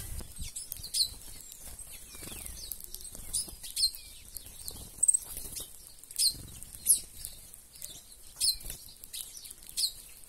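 A mixed flock of small seed-eating birds feeding on the ground, giving short, high, downslurred chirps about once or twice a second, with soft rustles and wing flutters beneath.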